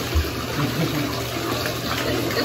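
Bathtub faucet running, water pouring steadily from the spout into the tub, with a brief low thump just after the start.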